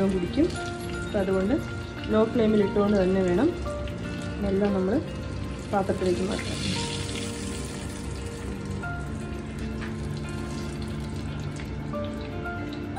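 Hot oil sizzling and crackling steadily around spice-coated fish pieces shallow-frying in a frying pan. A voice over background music is the loudest sound for the first six seconds or so, then the sizzling carries on under the music alone.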